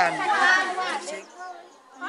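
A woman speaking Indonesian, her voice trailing off after about a second, followed by a quieter stretch.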